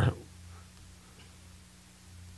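The tail of a man's word, then quiet studio room tone with a steady low electrical hum.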